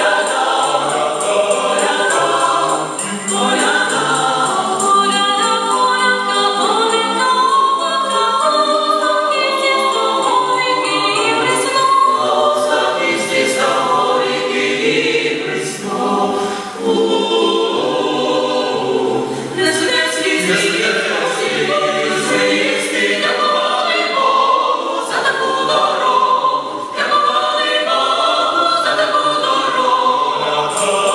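Mixed choir of men's and women's voices singing a Ukrainian Christmas carol a cappella in close harmony, with held chords and brief breaks between phrases.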